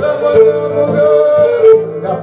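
Live Cretan folk music: a man sings a held, ornamented melodic line over a Cretan lyra and a plucked laouto.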